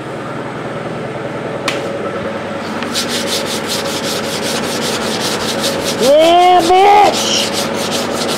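Hand sanding block rubbed in quick, even back-and-forth strokes over cured body filler on a van's steel side panel, starting about three seconds in, blocking the repaired dent flat. Around six seconds in a short pitched sound that rises and falls stands out over the sanding.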